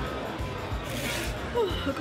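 Background music with a steady beat, a short noise about a second in, and a man's voice starting near the end.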